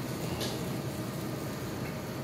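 Steady, even background noise of street ambience, with no distinct event standing out.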